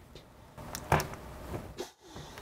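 A few light clicks and knocks from hands handling cables and small parts on a desk, over faint room noise.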